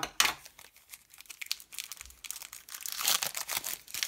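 Foil trading-card booster pack wrapper crinkling as it is handled, a quick run of small crackles with a sharp crackle just after the start and a busier stretch about three seconds in.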